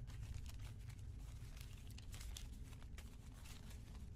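Cloth rustling and scratching in quick irregular strokes as hands work a sewn bow tie piece right side out, the fabric and its interfacing sliding and rubbing over themselves. A low steady hum runs underneath.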